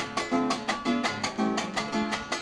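Strummed Venezuelan cuatro playing a gaita zuliana accompaniment, chords struck in a steady rhythm of about four strokes a second.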